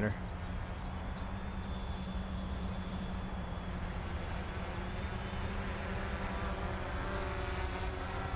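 Small electric quadcopter's motors and propellers running in flight: a steady buzzing drone with a faint whine that grows a little louder about three seconds in.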